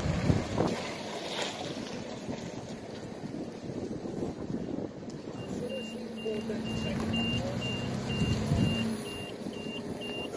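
A vehicle's reversing alarm beeping steadily about twice a second, starting about halfway through, over an engine running and general traffic noise. There are a couple of sharp knocks near the start.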